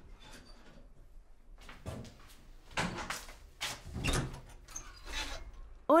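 An apartment door being opened by hand, its handle and latch clicking and clattering in a run of sharp knocks from about two seconds in.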